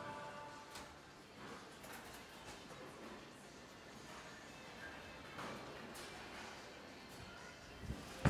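Quiet bowling-center ambience: low crowd and room noise with a few faint clicks and knocks.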